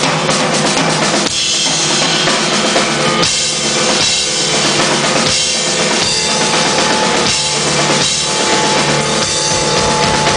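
Drum kit played hard: cymbals crashing and washing over bass drum and snare, in a driving pattern that repeats about every two seconds.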